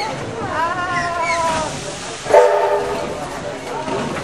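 Steam train drawing into a platform: a high wavering squeal rises and falls for about a second, then about halfway through a short, loud, steady chord of several notes sounds for under a second, over the train's running noise.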